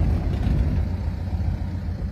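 VW Brasília's air-cooled flat-four engine running, a steady low rumble heard from inside the cabin, fading down near the end.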